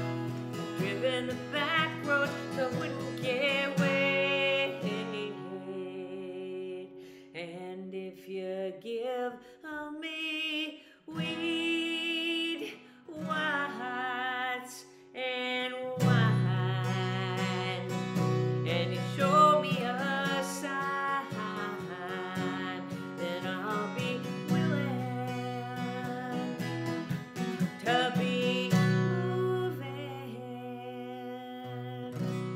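Steel-string acoustic guitar, capoed, strummed under a woman's singing voice in a slow country song. The strumming is lighter for a stretch in the middle and comes back full about halfway through.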